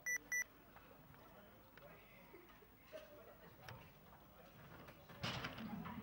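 Two short, high-pitched electronic beeps in quick succession, about a third of a second apart. Then a faint background until a man's voice begins near the end.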